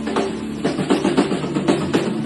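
Live rock band playing loudly: a drum kit with fast, busy strokes over sustained electric guitar notes.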